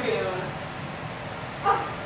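A person's voice: a short vocal sound falling in pitch at the start, then a brief sharp one near the end.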